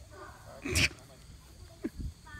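A young dog gives one short, sharp bark about three-quarters of a second in while being agitated in protection training, followed by a faint click near the end.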